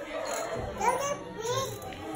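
Young children's voices: short, high calls and chatter from small kids playing together.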